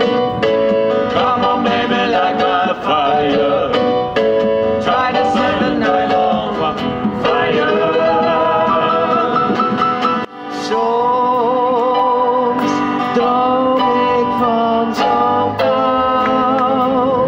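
A small live band playing a Christmas carol, with guitar and keyboard under sung melody. The music drops out briefly about ten seconds in, then picks up again.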